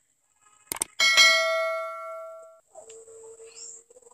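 Subscribe-button animation sound effect: a mouse click, then a bell chime that rings and fades away over about a second and a half.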